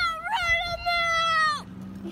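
A child's voice singing one long held high note, rising at the start and falling away at the end.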